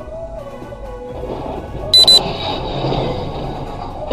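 Background music, broken about two seconds in by a loud, high-pitched double beep, typical of a dashcam's impact sensor going off as a truck crashes in the road ahead; a wash of crash noise follows under the music.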